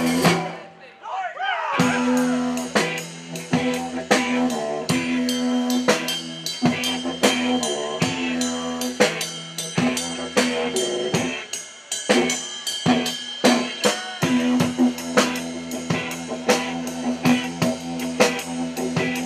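Live didgeridoo rock: a didgeridoo's steady low drone pulsing in rhythm over a drum kit's kick, snare and rimshot beat. The music drops out briefly near the start and comes back in about two seconds in.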